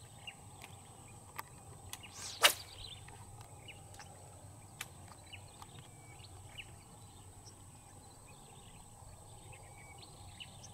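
A fishing rod whipped through the air in a cast: one quick swish ending in a sharp snap about two and a half seconds in. Faint short bird chirps and a steady high hum sound around it.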